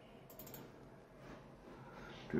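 Near silence with a few faint, quick clicks about half a second in, from a computer keyboard and mouse being worked.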